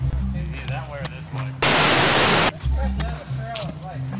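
A burst of loud static hiss lasting just under a second, starting about a second and a half in and cutting off sharply. It plays over background music with a low pulsing bass and faint voices.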